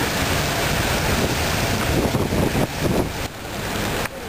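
Strong wind buffeting the microphone: a loud, steady rushing noise that eases a little near the end.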